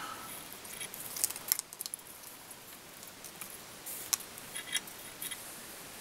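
Fingers winding a flat metal tinsel rib through the hackle of a fly held in a vise: faint scattered clicks and crinkles, with a few sharper ticks about a second and a half in and one near four seconds.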